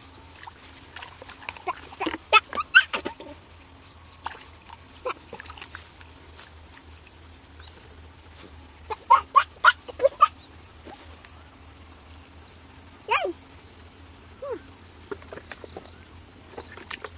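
Hands groping in thick mud and shallow water, making short wet squelching and sucking sounds in clusters: several about two seconds in, a quick run of about five near nine seconds, and a single falling squelch near thirteen seconds.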